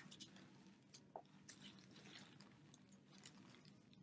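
Near silence: a faint steady room hum with scattered soft clicks and rustles.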